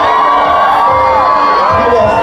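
Live concert of a pop-rock band: a sung melody of held and gliding notes over the band, with the crowd cheering and singing along.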